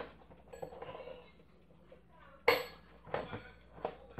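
A single short metallic clink from the twin steel bells of a battery-operated Westclox Big Ben alarm clock, about two and a half seconds in, with a brief high ring after it. A fainter ring comes about half a second in.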